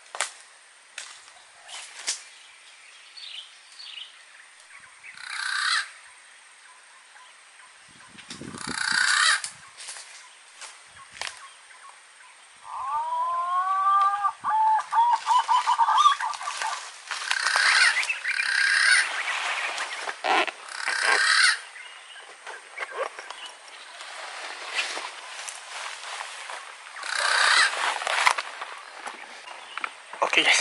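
A bird-call speaker playing a lure of green pigeon (punai) calls: about thirteen seconds in, a run of whistled, wavering notes lasting some three seconds. Around it, bursts of rustling and footsteps in dry brush.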